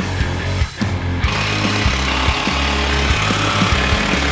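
Rock music with a steady beat. From about a second in, a Porter-Cable cordless drill driving a screw runs loudly over it.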